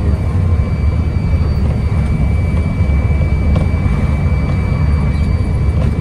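Steady engine and road rumble of a moving coach, heard from inside the passenger cabin near the front.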